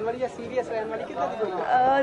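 Speech only: voices talking, with overlapping chatter, that the recogniser did not write down.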